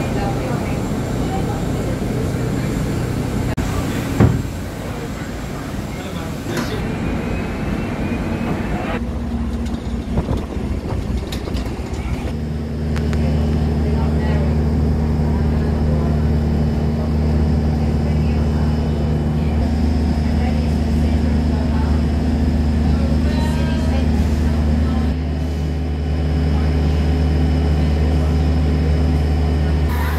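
Airport apron noise: a steady low mechanical hum that becomes louder and more even about twelve seconds in, with people's voices in the background and a single sharp knock about four seconds in.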